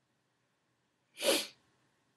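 A person sneezing once: a single short, sharp burst about a second in.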